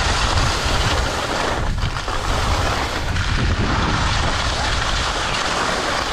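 Wind buffeting the microphone together with skis sliding and scraping over groomed snow: a steady rushing noise with a deep rumble, easing briefly about two seconds in.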